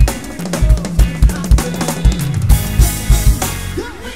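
Drum kit played live with a gospel band: regular kick-drum and snare hits over a bass line, with cymbals washing in about halfway through.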